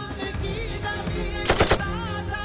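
A short burst of rapid gunfire, a few shots in quick succession, cuts in about three-quarters of the way through, over the song's steady sustained accompaniment.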